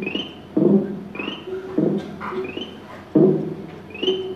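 Electronic music: a repeating figure of short synthesizer notes, one about every half second, each with a brief high chirp on top.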